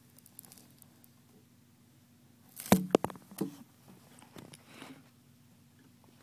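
Handling noise: a quick cluster of sharp knocks and clicks about halfway through, then a few fainter clicks a second or so later.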